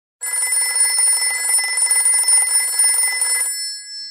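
A telephone's electric bell ringing: one long ring of rapid strikes lasting about three seconds. Its tone hangs on briefly after the clapper stops.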